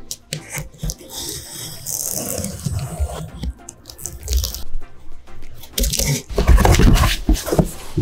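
A utility blade slitting the packing tape along a cardboard box's seam, then the box's flaps being pulled open with crackling and crunching, loudest from about six to seven and a half seconds in.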